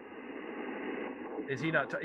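Steady hiss of band noise from the Yaesu FTDX10 HF transceiver's speaker, cut off above about 3 kHz by the receiver's filter, with no station speaking on the frequency. A man's voice comes in near the end.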